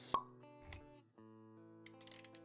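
Intro music of held plucked notes with a sharp pop just after the start, the loudest sound, and a soft low thump a little past half a second in.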